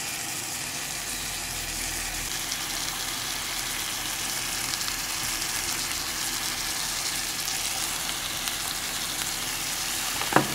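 Chicken drumsticks and sliced onions sizzling steadily in a frying pan.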